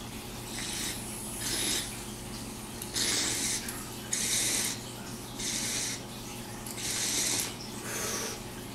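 Water bubbling in a glass dab rig as it is drawn through, in about six short pulls roughly a second apart.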